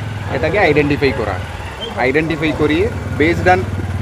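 A man speaking Bengali, with a steady low hum of an idling engine underneath.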